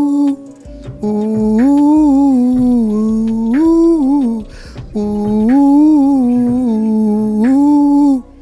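A man humming a wordless melody into a handheld microphone, in long held notes that rise and fall, the same phrase heard twice with a short break between, over a music backing track.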